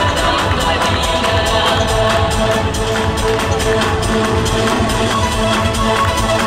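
Dance music with a steady beat, playing loudly and continuously.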